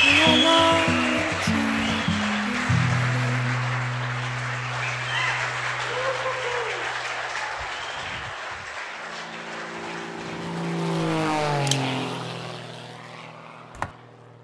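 Wedding guests applauding over background music, the clapping slowly fading away. Near the end a rising swoosh builds and then a sharp click sounds.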